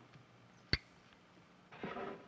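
Faint hiss of an old 16mm film soundtrack between lines of narration, broken by one sharp click about three-quarters of a second in and a short breathy noise near the end.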